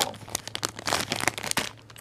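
Clear plastic bag of wax melts crinkling as it is handled: a quick, irregular run of crackles that dies away near the end.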